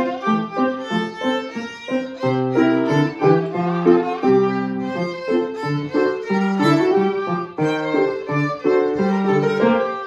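Violin and grand piano playing a piece together: the violin carries the tune over the piano accompaniment. It opens with a run of short, detached notes, then moves into longer held notes.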